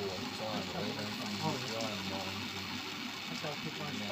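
Background chatter of other people's voices, with a steady low hum underneath.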